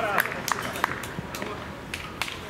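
A man's brief shout, then five or six sharp knocks from play on an artificial-turf mini-football pitch, spread irregularly across the two seconds.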